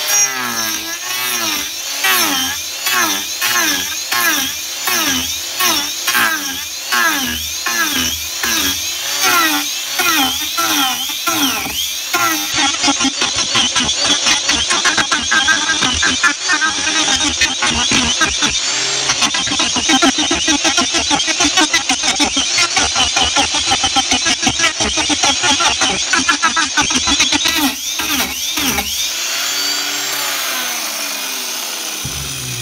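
Cordless angle grinder fitted with an Arbortech TurboPlane carving disc, planing the rough face of a log. The motor's whine dips in pitch under load and recovers with each pass, about three passes every two seconds. About 12 seconds in, the sound turns faster and denser as the footage is sped up fourfold.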